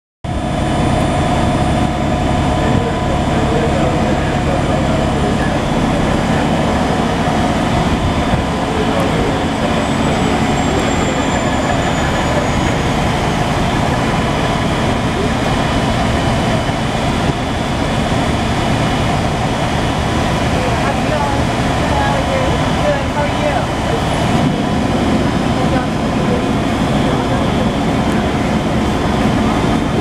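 Fire engines' diesel engines running steadily at the scene, a loud constant drone with several steady tones over a low rumble.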